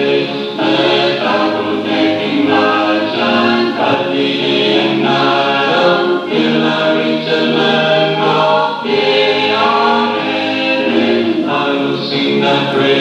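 A choir singing in several parts, holding each chord and moving on together.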